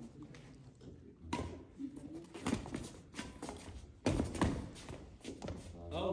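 Badminton rally: a few sharp racket strikes on a shuttlecock, with players' footsteps on the court, the loudest pair of hits coming about two-thirds of the way in.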